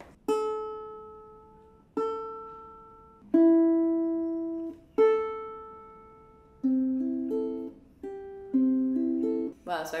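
Strings of a carbon-fibre Emerald Synergy harp ukulele plucked one at a time while it is being tuned up: four single notes, each left to ring and fade for a second or more, then quicker plucks of several strings at different pitches in the second half.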